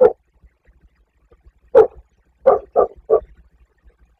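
A dog barking: one bark at the start, then four more from just under two seconds in, the last three in quick succession.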